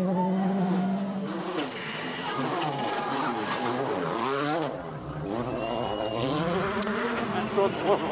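Volkswagen Polo R WRC's turbocharged four-cylinder engine revving hard, its pitch climbing and falling again and again with throttle and gear changes.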